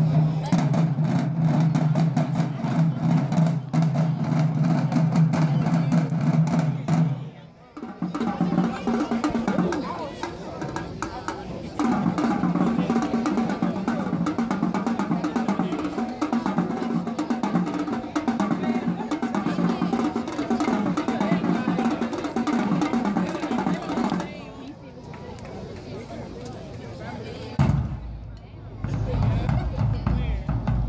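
Marching band drumline playing a percussion cadence on snare drums, tenor drums, bass drums and cymbals, with crowd chatter over it. The playing dips briefly about eight seconds in, eases off for a few seconds near the end, then comes back with a loud hit.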